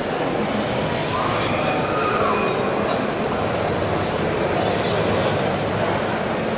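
The drive motors of a full-size BB-8 droid replica whine and shift in pitch as it rolls across a carpeted floor. Behind it runs the steady background noise of a busy exhibition hall.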